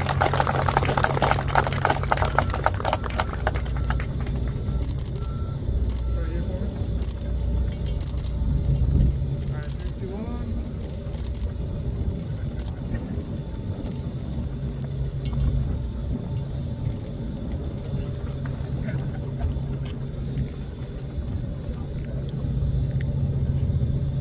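A small crowd applauding for about the first three seconds, dying away. After that a steady low rumble runs under faint background sounds.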